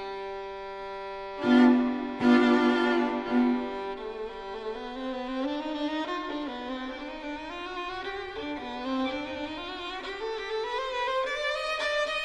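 A string quartet of two violins, viola and cello plays slow classical music. A held chord opens, with two accented strokes about a second and a half and two seconds in. A line played with vibrato then climbs slowly in pitch through the rest.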